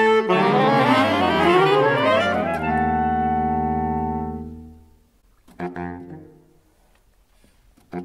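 Saxophone quartet of soprano, alto, tenor and baritone saxophones: a held chord breaks into glissandi, some voices sliding up while others slide down, and settles on a new sustained chord that fades out about five seconds in. A short burst of sound follows a moment later.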